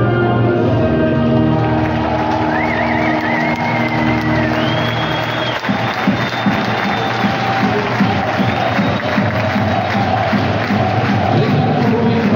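A national anthem played over an ice-hockey arena's PA system, ending about five seconds in, with whistles from the crowd near its close. A large arena crowd then cheers and claps.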